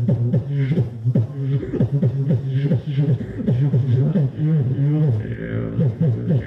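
Human beatboxer performing into a handheld microphone: a steady deep bass hum under a fast rhythmic pattern of falling bass hits and sharp vocal clicks.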